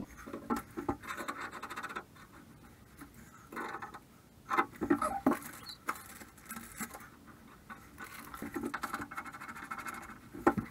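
Scratching, rubbing and clicking of new brass shower valve stems and their small parts being handled and fitted by hand, with a few louder clicks midway and quick runs of fine ticking near the start and end.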